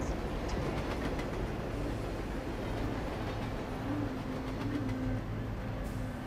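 A train running on rails: a steady, even rumble with a few faint ticks.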